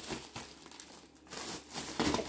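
Clear plastic bag crinkling as it is handled, in short irregular rustles.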